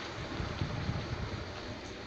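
Steady outdoor background noise: an even hiss with irregular low rumbling and no distinct event.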